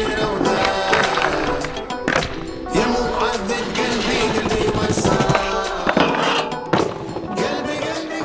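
A skateboard rolling, with a few sharp clacks of the board, mixed over a music soundtrack.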